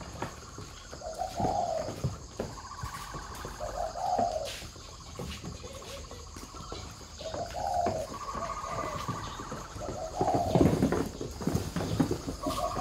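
Spotted doves cooing, a low call repeating about every three seconds, with a higher warbling bird call between. Near the end come louder knocks and shuffles of flip-flop footsteps.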